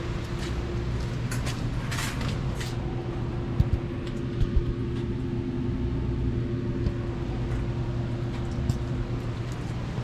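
Diesel engine of a Putzmeister TK70 trailer concrete pump running at a steady speed, with a few short knocks near the middle.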